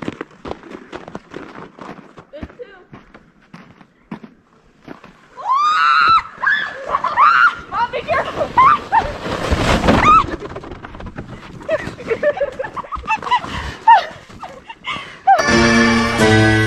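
Short crunching steps in snow, then high shrieks and yells from about five seconds in as a rider slides down on a plastic sled, with a rushing noise of the sled through the snow in the middle. Music starts just before the end.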